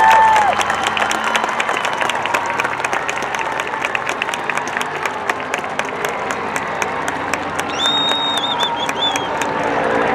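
Stadium crowd applauding and cheering, many individual claps standing out, in response to a band's Division One rating being announced. A high, wavering whistle-like tone rises above the applause about eight seconds in.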